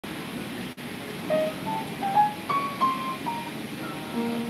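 Upright piano played by hand: after a low murmur, a melody of single notes starts about a second in, stepping up and down in the middle-upper range.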